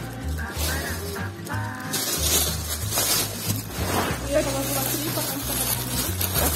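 Background music: a song with a voice over a bass line that steps from note to note.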